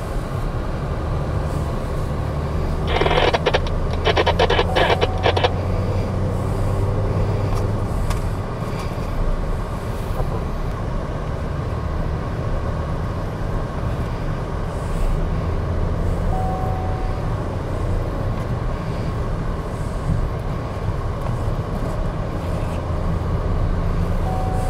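MG Astor driven fast on a race track, heard as steady engine and road noise, with a brief rattling burst about three to five seconds in.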